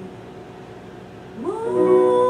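A short hush, then about one and a half seconds in a woman's singing voice slides upward and settles into a loud held note.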